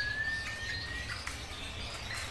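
A rosella giving one clear whistled note that rises slightly in pitch and lasts about a second, with faint high chirps around it.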